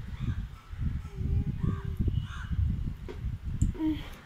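Crows cawing several times in short calls over a low, uneven rumble.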